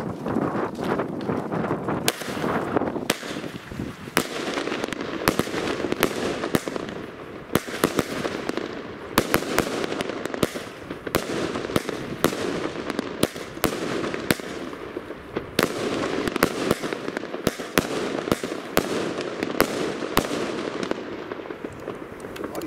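An 18 mm, 16-shot firework cake (Iskra Line 'Blitz Rums') firing its silver-tailed shots, each ending in a titanium salute: a loud sharp bang about once a second, sometimes two close together, over a steady background hiss.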